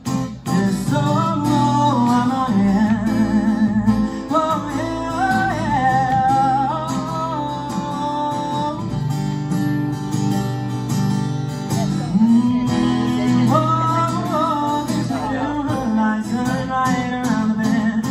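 Instrumental break in a live country-pop song: a steel-string acoustic guitar strummed steadily, with a wavering, bending melody line carried over the chords.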